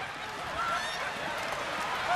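Theatre audience laughing and whooping together, many voices at once in a steady wave.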